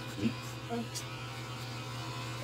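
Electric beard trimmer running with a steady buzz as it is moved through a full beard.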